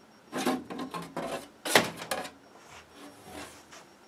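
Metal cover of a Wavetek 1910 oscilloscope being slid off its chassis, scraping and rubbing, with a sharp clank a little under two seconds in and quieter rubbing after.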